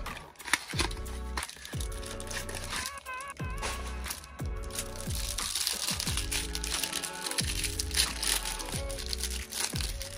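Background music, with the crinkling of a thin plastic cellophane wrapper being handled and pulled off a stack of trading cards.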